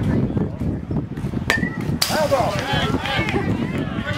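A metal baseball bat striking a pitched ball: a single sharp crack about one and a half seconds in, with a brief ringing ping after it. Voices of players and spectators shout just after the hit.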